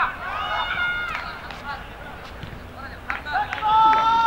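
Men shouting across a football pitch: one long call just after the start and another near the end, with a few sharp knocks between.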